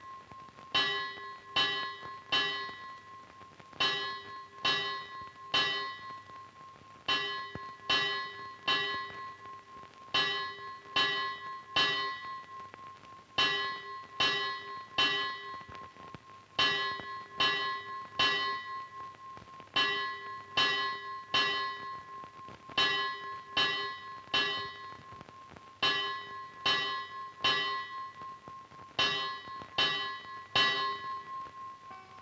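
Temple bell rung in repeated groups of about four strikes, a group roughly every three seconds, each strike ringing on.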